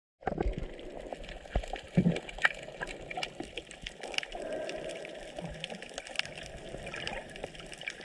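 Underwater sound picked up by a camera's microphone below the surface: a steady water hiss with scattered sharp clicks and crackles throughout, and a few louder low thumps in the first two seconds.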